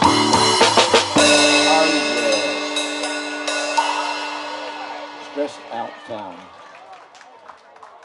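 Live band ending a song: a drum kit plays a few last hits, then the final chord rings out with the cymbals and slowly fades away.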